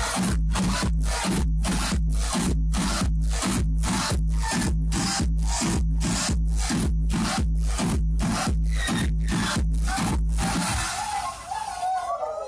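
Loud electronic dance music played by a DJ over a club sound system: an even, driving beat of harsh, noisy pulses a little over twice a second over a deep sustained bass. Near the end the beat and bass drop out into a short breakdown with a melodic line.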